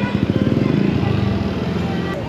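Street traffic passing close by: a motor vehicle engine running with a rapid low pulse.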